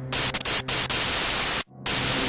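Loud burst of radio static hiss that crackles and cuts out briefly twice, with a low music drone underneath.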